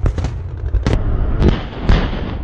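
Live weapons fire: a quick series of about five sharp reports in two seconds, each trailing off in a rolling rumble.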